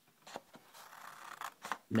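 Scissors cutting through a paper sheet: a few short, quiet snips of the blades with light paper rustle between them.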